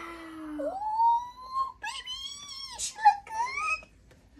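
High-pitched whining vocalisation: several long, drawn-out notes that glide up and down, with a rising note near the end.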